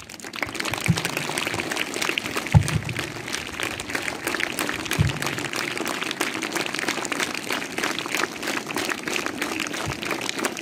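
An audience claps steadily and evenly throughout, with a few dull low thumps about one, two and a half, and five seconds in.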